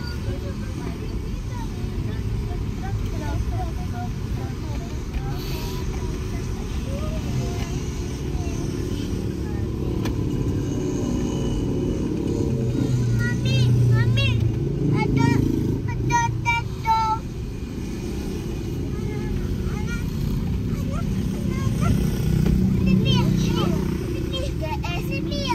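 Steady low road and engine rumble inside a moving car's cabin, with brief high-pitched voice sounds about halfway through and again near the end.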